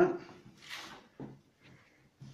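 A man's voice trailing off at the start, then a quiet room with a short hiss and a brief low murmur.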